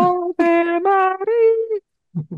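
A single voice singing, performed as an in-game sound. A long held note breaks off just after the start, and three shorter notes then step upward in pitch, the last one slightly higher and held briefly.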